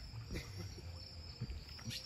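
Insects trilling steadily in a single high tone, over a faint low rumble.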